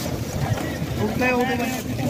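Wind buffeting the microphone, with a voice calling out for under a second about a second in.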